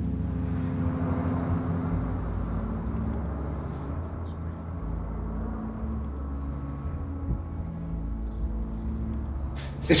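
Jet airliner flying overhead: a steady rumble that swells over the first couple of seconds and then slowly fades.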